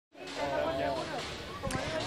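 Faint voices talking in the background, with a single low knock near the end.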